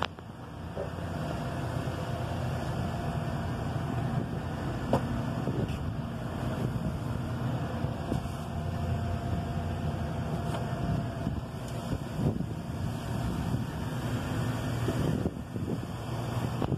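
Steady low hum of running rooftop air-conditioning machinery, with a faint steady whine through most of it and a couple of light knocks.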